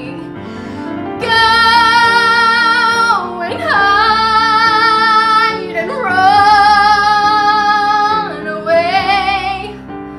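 A woman sings a musical-theatre song over instrumental accompaniment. After a quieter second at the start, she sings four long held notes with vibrato, her voice sliding down at the end of each phrase.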